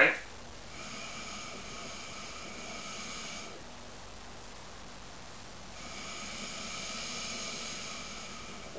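A hookah being drawn on through its hose, air pulled through the water in the base, in two long pulls of about three seconds each, the second starting about six seconds in.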